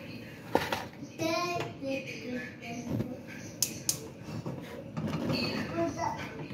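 Indistinct talking in the background, with a few sharp clicks about halfway through as a gas stove burner is lit.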